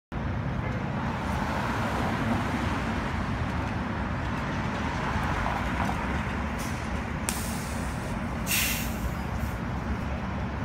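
A city transit bus's diesel engine rumbling steadily as it pulls up to a stop, with short air-brake hisses near the end as it comes to a halt.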